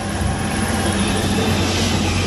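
Steady machine noise: a constant low hum under an even rushing hiss, with no distinct strikes or rhythm.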